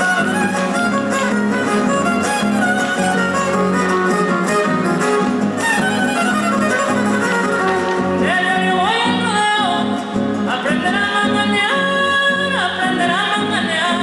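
Huapango (son huasteco) played live: a violin over strummed guitars. About eight seconds in, a singing voice comes in, sliding and leaping between notes.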